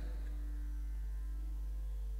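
Steady electrical mains hum from a sound system between spoken phrases, a low, even hum that does not change.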